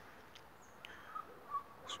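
Quiet outdoor background with a few faint, short chirps.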